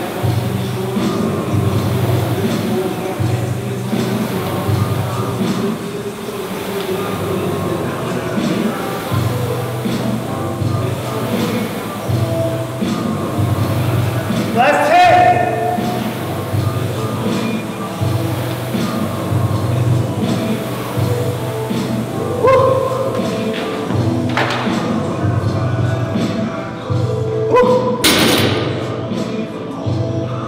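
Air rowing machine's fan flywheel whirring and thudding in a steady stroke-by-stroke rhythm during hard rowing, under background music with singing. One sharp knock near the end.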